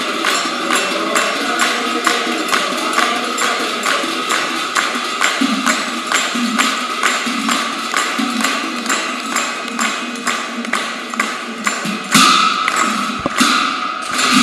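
Group devotional chanting (nam-prasanga): men singing together, kept in time by hand claps and small hand cymbals striking a steady beat about three times a second. A louder burst of noise comes near the end.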